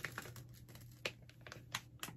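Plastic food packaging crinkling faintly, with a few sharp crackles about a second apart, as a sauce pouch is handled and lifted out of a plastic ready-meal tray.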